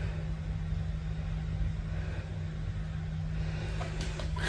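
Steady low background hum with a rumble underneath, unchanging throughout.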